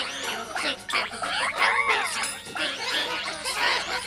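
Cartoon soundtrack run through a 'G major' audio effect: layered, pitch-shifted voices and music that warble, their pitch bending up and down.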